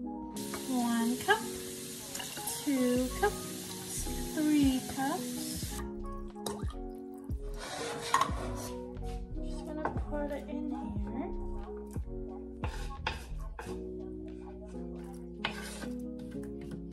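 Background music plays throughout. A steady hiss fills the first six seconds, then stops abruptly. After that come scattered light clinks, knocks and scrapes of a utensil and a knife against a stainless steel pot and a wooden cutting board.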